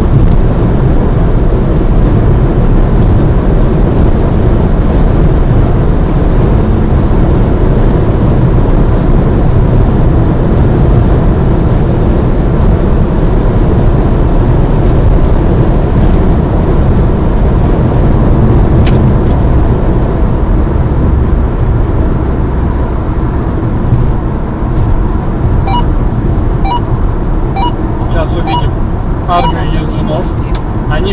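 Steady road and wind noise heard inside a car's cabin while cruising at motorway speed, with a low tyre rumble the loudest part.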